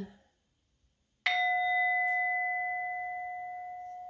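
Metal singing bowl struck once with a mallet about a second in, ringing on with a steady low tone and higher overtones that fade slowly.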